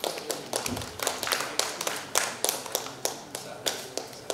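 Scattered applause from a small audience: a few people clapping, with the separate claps standing out at an uneven pace rather than merging into a wash.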